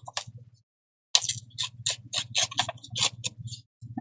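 A page of paper being torn by hand: a run of quick crackling rips starting about a second in and lasting about two and a half seconds.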